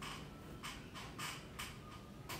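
Four short, irregular creaking or scraping sounds inside a moving car, over the low rumble of the car driving on a paved road.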